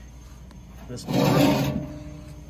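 A short rubbing, scraping handling noise lasting under a second, starting about a second in, over a faint low hum, overlapping a single spoken word.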